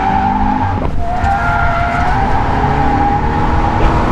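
Subaru BRZ's tyres squealing through a long drift on dry tarmac, a steady high squeal that wavers slightly in pitch and falters briefly about a second in. Underneath, the car's flat-four engine runs hard.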